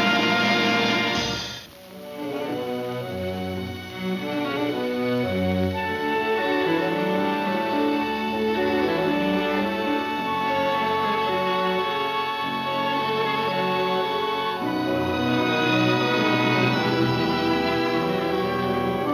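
Orchestral film score: a loud held passage breaks off about a second and a half in, then strings and orchestra pick up again and play on.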